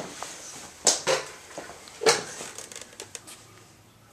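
A few knocks as a man steps onto a mechanical dial bathroom scale, followed by a run of faint light clicks.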